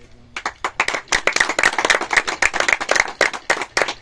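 Applause: a group of people clapping, starting suddenly about a third of a second in and continuing as a dense stream of claps.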